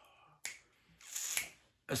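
A single sharp click about half a second in, then a short, breathy inhale from a man pausing before he speaks again.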